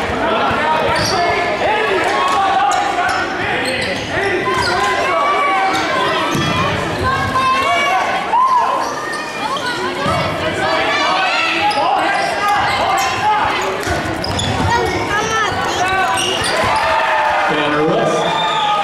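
Live basketball game in a gym: a ball dribbling on the hardwood floor and sneakers squeaking under a steady din of shouting from players, coaches and crowd, echoing in the hall.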